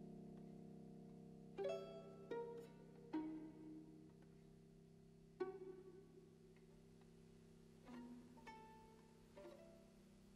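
Violin pizzicato: about seven quiet, widely spaced plucked notes, each dying away quickly, over a low held piano chord that slowly fades.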